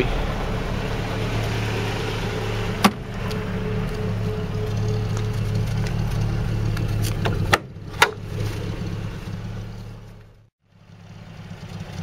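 Steady low hum of the parked Land Rover Series III's 2.25-litre petrol engine idling. It is broken by a sharp click about three seconds in and two more close together around eight seconds. Near the end the sound fades almost to nothing and comes back up.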